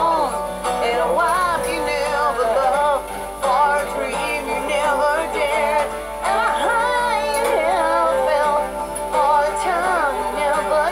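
Live acoustic rock performance: a woman singing a wordless vocal line whose pitch slides and wavers, over steady accompaniment.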